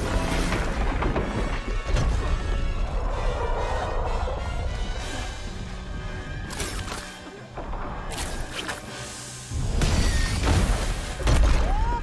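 Film soundtrack: dramatic score mixed with action sound effects of crashing and smashing debris, with several heavy impacts that are loudest near the end.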